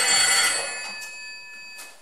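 A telephone bell ring, a cluster of bright high tones that fades away over about a second and a half: the desk phone that is answered right after.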